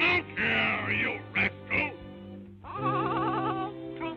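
A cartoon character gives four short, squawky, duck-like outbursts in quick succession over the orchestral score. About two and a half seconds in, they give way to music with wavering, vibrato-laden sustained notes.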